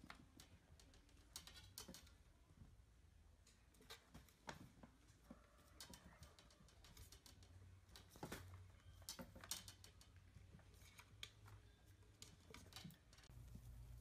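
Near silence with faint, irregular taps and rustles from kittens scampering and batting at toys on carpet.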